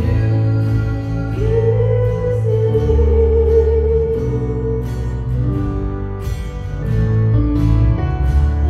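Live acoustic pop ballad: a woman sings over strummed acoustic guitar and a Roland Juno-DS keyboard, with one long note held through the middle.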